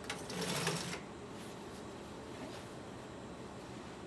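Industrial sewing machine running in one short burst of stitching through vinyl, lasting about a second near the start.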